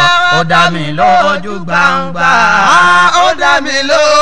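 A man chanting in a sung melody, holding long notes that bend and glide in pitch, with short breaks between phrases.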